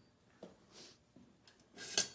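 Quiet handling noise: a faint brush of sound, then near the end a short, louder scrape and rattle of kitchen utensils as a serving spoon is pulled from a utensil holder.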